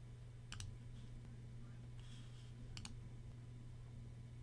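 Two computer mouse-button clicks, a little over two seconds apart, over a faint steady low hum.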